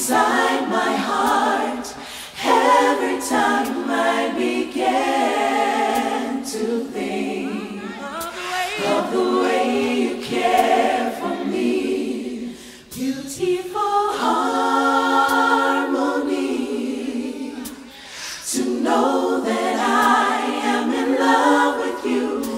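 A gospel vocal group singing held harmonies with no instruments, in long phrases broken by short breaths about 2 s, 13 s and 18 s in.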